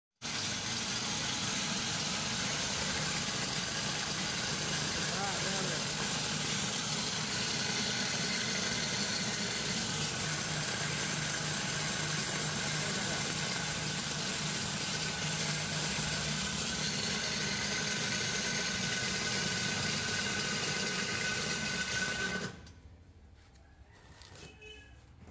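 Electric plate grinder mill with iron grinding plates, driven by a 3-horsepower motor, running steadily while milling grain into meal. The sound stops abruptly shortly before the end.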